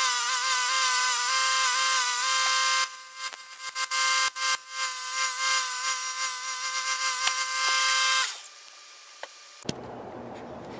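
Bench grinder running with its wire wheel brushing a small-engine exhaust pipe clean: a steady whine with a rough hiss that swells and drops as the part is pressed on and eased off. It stops about eight seconds in.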